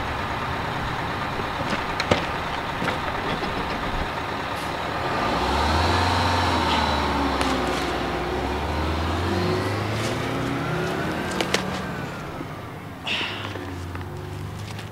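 Truck engine running, then pulling away: from about five seconds in it grows louder, its pitch rising and falling, and fades near the end. A few sharp clicks are heard along the way.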